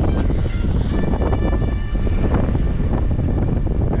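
Wind buffeting an open microphone in a loud, steady low rumble.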